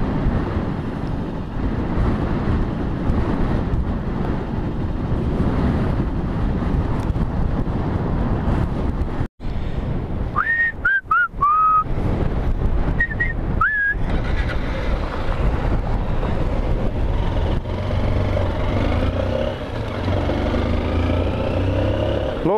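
Strong wind buffeting the microphone of a motorcycle riding on a gravel road, over the motorcycle's engine and the tyres on loose gravel. The sound breaks off sharply about nine seconds in, followed by a few short whistling tones.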